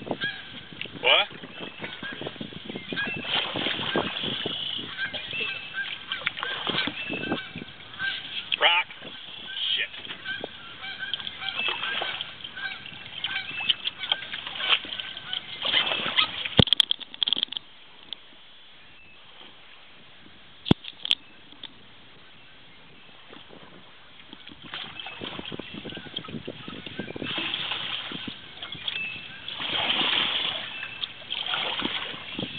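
Geese honking repeatedly, the calls crowding the first half. A quieter stretch follows with two sharp knocks, then the rush of water returns.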